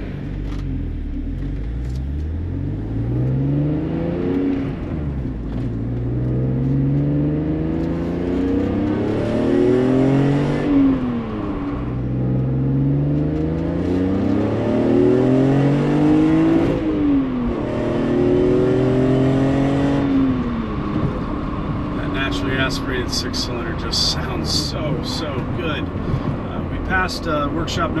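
BMW E46 M3's straight-six engine accelerating through the gears, its note climbing in pitch in several pulls with a drop at each upshift. It then holds a steady note and falls away as the car eases off and slows.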